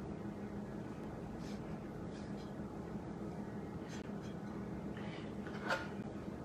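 Quiet kitchen room tone with a faint steady hum and soft sounds of dough being handled and shaped into a roll. Near the end comes a light knock as a bench scraper cuts through the dough onto the board.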